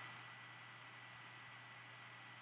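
Near silence: faint steady hiss of the recording's noise floor, with a low hum and a thin high tone.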